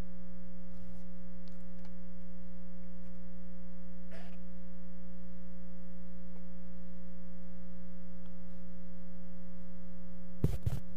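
Steady electrical mains hum in the audio feed: one unchanging low buzzing tone with a stack of higher overtones. A few faint short sounds come through under it, the clearest about four seconds in.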